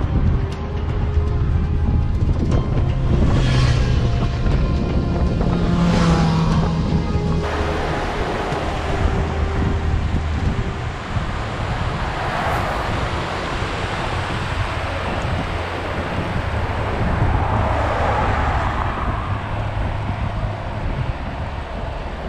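Background music with a steady bass line for about the first seven seconds, then it stops and a steady rushing noise remains: a fast glacial mountain river tumbling over boulders.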